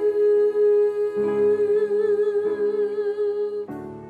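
Worship song: a woman's voice holds one long note with a slight vibrato over a steady instrumental accompaniment that changes chords twice. The held note ends shortly before the end, leaving the quieter accompaniment.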